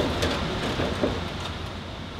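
Steady hum of lab ventilation and equipment, with a few light clicks of plastic petri dishes as stacks of agar plates are handled.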